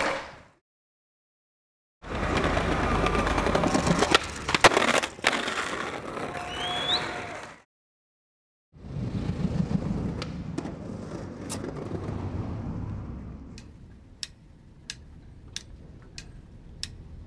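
Skateboard wheels rolling on concrete, with several sharp cracks of the board popping and landing, cut by two brief silences. The rolling fades out near the end into a run of even clicks about two a second.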